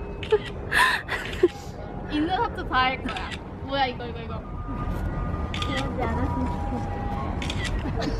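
Young women's voices calling out and exclaiming in short bursts, with a few light clicks. Steadier held tones, like soft background music, come in during the second half.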